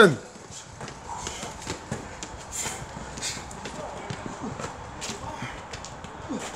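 Footsteps of athletes in trainers bounding and running up concrete stairs: a quick, irregular series of light footfalls and thuds on the steps.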